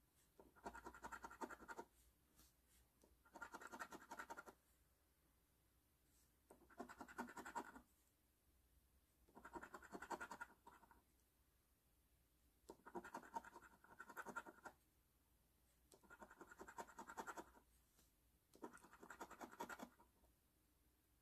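A coin scratching the coating off the number spots of a scratch-off lottery ticket, in seven short bouts of rapid scraping about a second or so each, with near silence between them.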